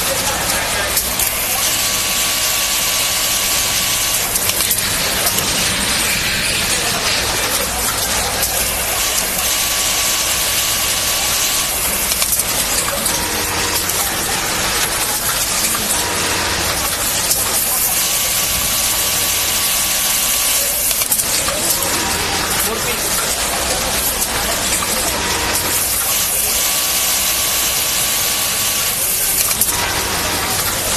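Industrial hemming sewing machine running in four bursts of about two to three seconds, a steady whirring with a faint whine, each burst sewing one hem. Under it runs a constant background noise.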